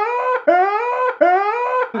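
A man's exaggerated mock crying: three loud, high wails, each rising in pitch and lasting about half a second.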